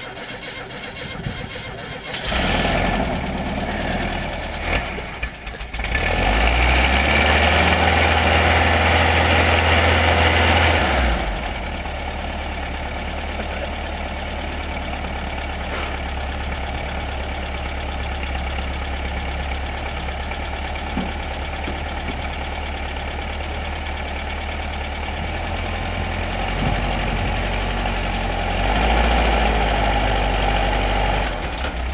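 Old split-window VW bus's air-cooled flat-four engine starting about two seconds in, running at raised revs for several seconds, then settling to a steady idle; the revs rise again near the end.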